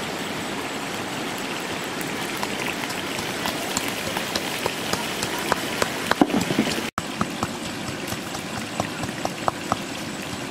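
Pestle pounding garlic in a coconut-shell bowl: a run of sharp, irregular taps that thicken about six seconds in, over the steady rush of a river.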